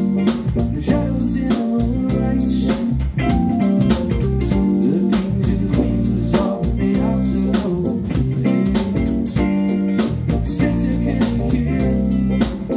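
A live funk band playing a groove: electric guitar, bass guitar, keyboard and drum kit with a steady hi-hat beat, joined by saxophone lines.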